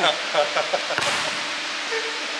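Brief laughter and voices, then a single sharp knock about a second in, echoing in a large gym hall over a steady hiss.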